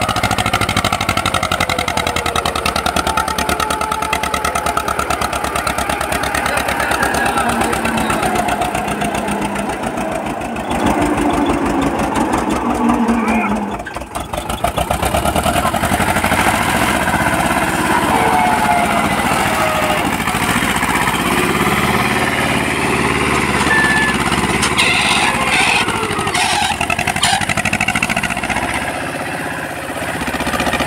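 Eicher 364 tractor's diesel engine running steadily under load, pulling a loaded trolley over soft ploughed ground; the sound dips briefly about halfway through.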